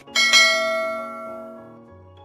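Subscribe-animation bell sound effect: a bright bell chime just after a click, ringing and fading away over about a second and a half, over soft background music.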